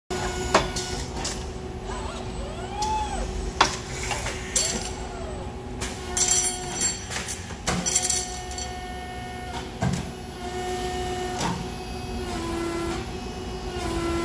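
Automated robotic feeding and forming cell cycling: two motor whines rise and fall in pitch in the first five seconds as the axes move, and grippers and clamps clack sharply every second or two over a steady machine hum.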